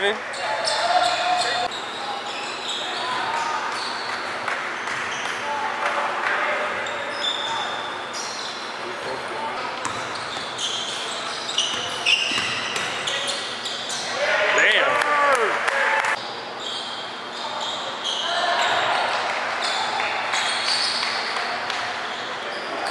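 A basketball being dribbled on a hardwood gym floor during play, with repeated bounces and the voices of players and spectators around it; one voice calls out loudly about two-thirds of the way through.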